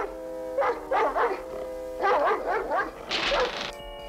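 Cartoon guard dog barking and snarling in a few loud bursts over background music.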